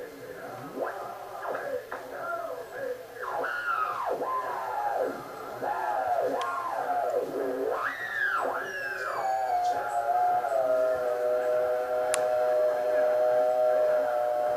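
Native American chanting music received as a radio broadcast on the antenna tuned near 660 kHz. The voices sweep down in pitch again and again, then settle into a steady held tone from about ten seconds in.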